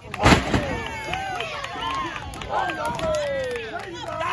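One loud slam on the wrestling ring about a quarter of a second in, as a wrestler's body hits the canvas, followed by onlookers shouting and yelling over each other.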